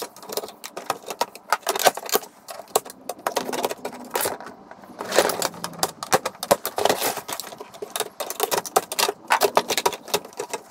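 Plastic and metal parts of a VCR being handled and pulled apart, with quick irregular clicks, rattles and knocks.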